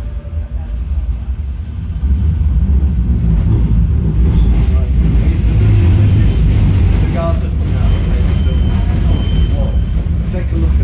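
Bombardier M5000 tram running on street track, heard from inside the car as a steady low rumble that grows louder about two seconds in.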